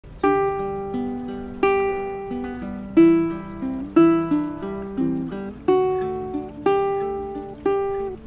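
Solo ukulele playing a picked introduction: single notes and chords plucked with the strongest strikes about once a second, each ringing out and fading before the next.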